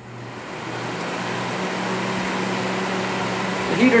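NewAir G73 5000-watt electric shop heater cycling on under its thermostat: the fan spins up over about a second, then blows steadily with a low hum under the rush of air.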